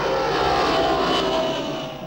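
An aeroplane flying past, its engine noise swelling to a peak about a second in and easing off near the end.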